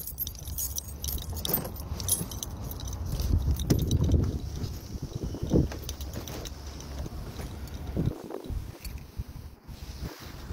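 A bunch of keys jangling, with scattered metal clicks and rattles as a key is worked in a car's door lock, over a low rumble on the microphone.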